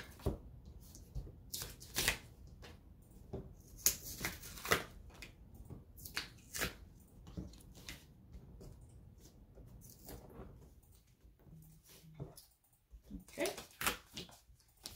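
Cut cardstock pieces being separated and picked off a cutting mat by hand: irregular short paper rustles and light clicks.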